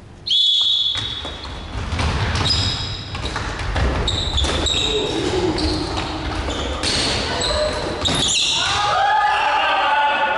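A referee's whistle blast starting the point, then dodgeballs thudding and bouncing on a wooden gym floor during the opening rush, echoing in a large hall. Players shout loudly near the end.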